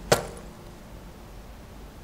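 A single sharp knock just after the start, loud, with a brief ring, then faint room tone.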